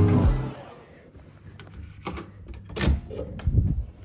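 Guitar background music fading out within the first half second, then a few sharp clicks and dull thumps from a hotel room door being unlocked and pushed open.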